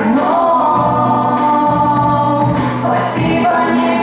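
Two women singing a duet through handheld microphones, holding long notes that slide from one pitch to the next.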